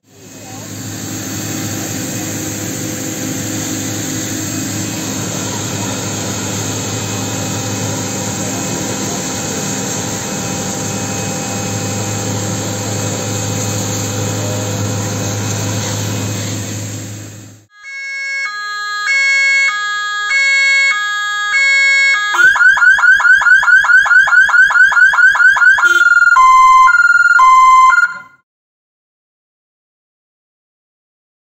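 A water jet hisses steadily over the hum of a fire engine's pump running, for about the first seventeen seconds. Then a fire engine's electronic siren cycles through its tones: a stepped pattern, a fast warble, and a two-tone hi-lo. It stops abruptly a couple of seconds before the end.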